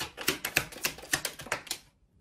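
A deck of cards being shuffled by hand: a quick run of light clicks and slaps, about eight a second, that stops near the end.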